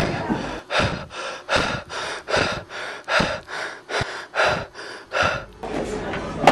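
A person panting hard and fast while running, about two and a half quick breaths a second in a steady rhythm.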